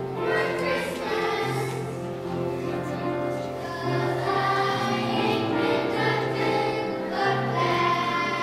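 Children's choir singing a song over an instrumental accompaniment that holds steady low bass notes.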